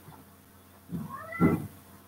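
A domestic cat meows once about a second in, a short call that rises and then falls in pitch.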